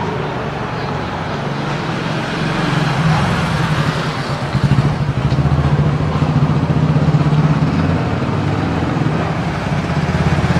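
Motorcycle engine running, growing louder about halfway through as it approaches, over general street noise.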